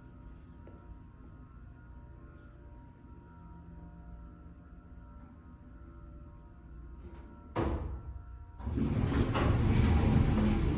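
Dover hydraulic elevator running with a low, steady hum inside the car, then a sudden clunk about three-quarters of the way in as it arrives. Just after that, the car and landing doors slide open with a loud rumble and rattle.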